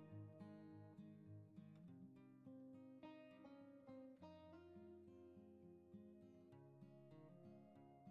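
Faint background music: plucked acoustic guitar playing a gentle run of notes.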